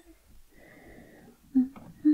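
A woman's soft, breathy exhale lasting about a second and a half. Near the end comes a short hummed note with a small click.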